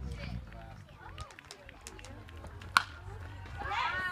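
A single sharp crack of a baseball bat hitting the pitched ball, a little under three seconds in, over faint background voices. Voices rise into shouting near the end as the batter runs out a hit.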